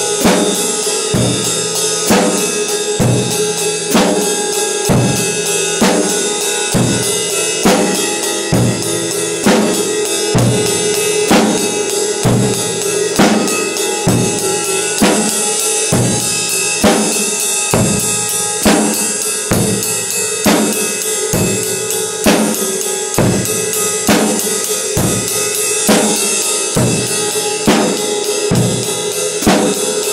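Drum kit played with sticks in a slow blues beat: bass drum and snare hits on a steady pulse, under a quicker run of cymbal strokes, kept up evenly throughout.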